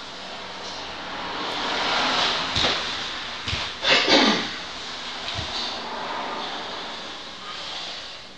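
Cotton karate gi swishing and snapping as the arms sweep through the slow circular opening of a kata, with a few short sharp snaps and a louder rush of noise about four seconds in.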